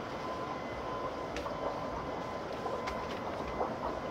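Steady background noise with a faint, constant high whine running through it and a few faint ticks.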